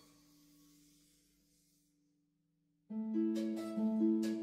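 Prepared-harp quartet music: a single low held note fades away almost to silence, then a little under three seconds in the harps come in loudly with a dense cluster of plucked notes.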